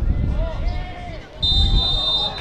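Distant shouting voices over a low rumble, then near the end a single steady, high blast of a referee's whistle.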